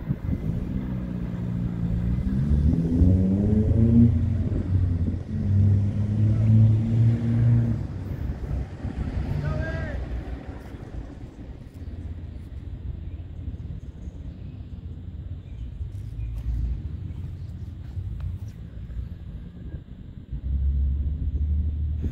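A diesel-hauled freight train moving away: low engine tones and rumble, strongest in the first several seconds, then fading to a faint low rumble.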